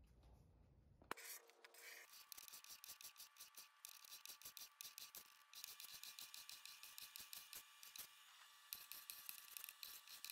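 Faint, quick, repeated scraping strokes of a hand paint scraper stripping latex paint off a wooden dresser top, starting about a second in.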